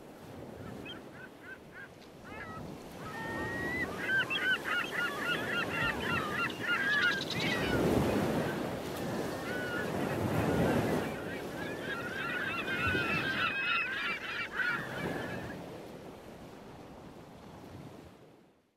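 A flock of birds calling over and over in short, quick calls over the wash of surf, with the surf swelling a couple of times in the middle. The whole fades in at the start and fades out near the end.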